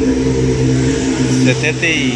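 Metal lathe running with a steady electric-motor hum while set up to bore a motorcycle engine cylinder.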